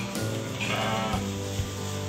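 A goat bleats once, a short wavering call about half a second in, over a song with a steady bass line.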